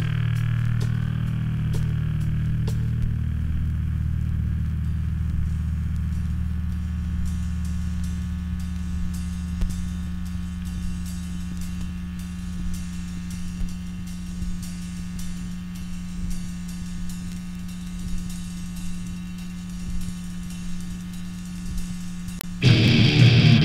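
A sustained, droning electric chord from a hardcore punk record ringing on and slowly fading after a sharp hit at the start, with faint clicks of vinyl crackle over it.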